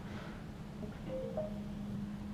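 KitchenAid commercial-style gas range giving a short, faint electronic chime of a few brief tones about halfway through, signalling that the oven's bake cycle has been canceled from the app. A low steady hum runs underneath.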